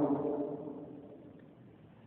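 A man's amplified voice trailing off at the end of a sentence, its echo fading away over about a second and a half into near silence.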